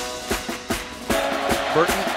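Rock-style backing music with drum hits about three a second. A man's voice comes in over it near the end.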